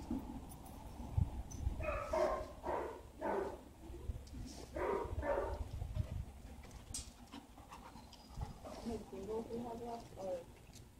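Dogs barking in short runs of evenly spaced barks, with a whining sound near the end, over a steady low rumble.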